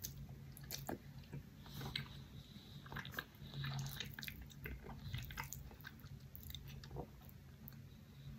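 Close-miked chewing of stir-fried wok noodles with vegetables: wet, sticky mouth clicks and smacks coming irregularly, over a faint steady low hum.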